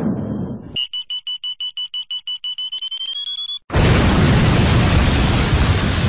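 A fast run of short, high electronic beeps, about eight a second, edging up in pitch near the end, then cut off by a sudden loud wall of rushing noise.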